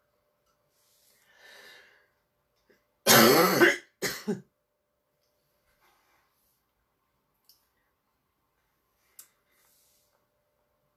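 A person clearing their throat: a faint breath in, then one loud throat-clear lasting about a second, followed at once by a shorter second one. A couple of faint ticks come later.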